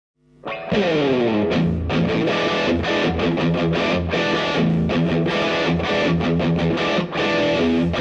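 Distorted electric guitar, an Aria PE-1200 through a Marshall JCM 900 valve combo, opening a rock song. It comes in with a falling pitch slide in the first second, then plays a steady riff to an even beat.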